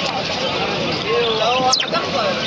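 Crowd of voices talking over one another in a busy outdoor market. Near the end comes a short high whistle that falls quickly in pitch.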